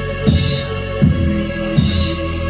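Hip-hop instrumental beat: a deep kick drum with a falling pitch about every three-quarters of a second and a snare-like hit on every other beat, over a sustained synth chord.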